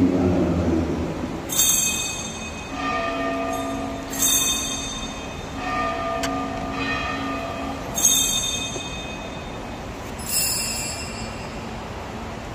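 Small altar bells rung in four separate bursts a few seconds apart, each a bright jingle followed by a ringing tone that hangs on. They mark the elevation at the consecration of the Mass.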